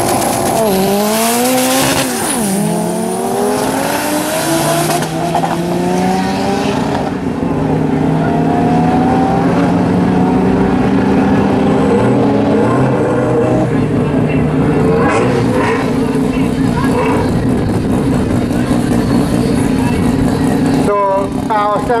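Two drag-racing cars launching hard off the line, one of them a Mitsubishi Lancer Evolution's turbocharged four-cylinder. Their engines rev up and drop in pitch at quick gear changes in the first few seconds, then hold a steady loud drone down the strip.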